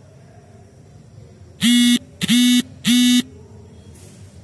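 Three loud, buzzy horn-like blasts, each about half a second long and each starting with a quick upward swoop in pitch.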